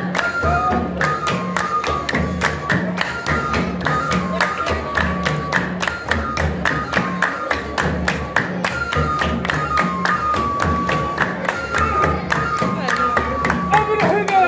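Traditional folk music from a troupe of men: hand claps in a fast, even rhythm over a low drum-like beat, with a high melody line that steps between a few held notes.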